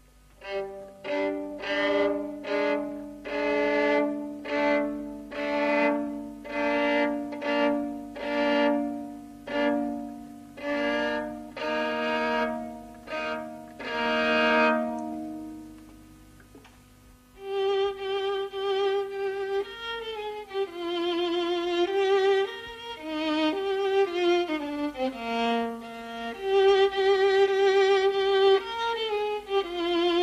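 Solo violin playing. It begins with a run of short, separately bowed double-stopped chords, about one a second. After a brief pause it moves into a slower singing melody with vibrato.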